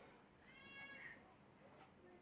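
A faint, brief, high-pitched call, lasting well under a second, about half a second in, against near-silent room tone.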